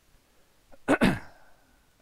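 A person sneezing once, loudly and close to the microphone, about a second in.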